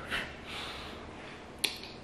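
Handling of a glass perfume bottle: a brief soft hiss near the start, then one sharp click about one and a half seconds in.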